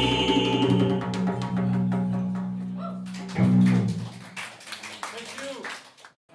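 Acoustic band of guitars, electric bass and djembe ending a song: a held chord that starts to fade about a second in, then a final accented chord just after three seconds that rings out and dies away.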